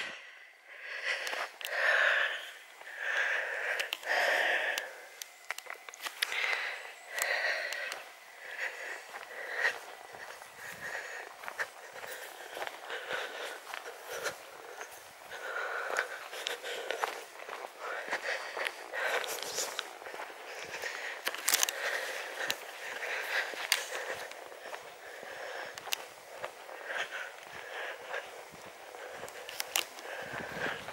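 Footsteps on a dry dirt path: irregular crunches and scuffs throughout, with the walker's breathing.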